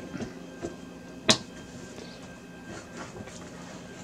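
Bundled PSU power cables being handled and tucked into place, with one sharp click about a second in, likely a plastic connector knocking against the board or desk.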